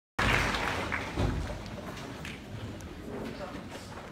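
Indistinct murmur of an audience talking among themselves, with a thump just over a second in.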